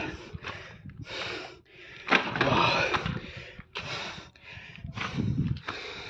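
Heavy, panting breaths of a climber out of breath from the ascent, a rapid run of in-and-out breaths about one a second, the loudest about two seconds in.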